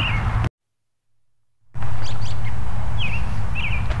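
Small birds chirping several times, each call a short upward sweep, over a steady low rumble. Near the start the sound cuts out to dead silence for about a second.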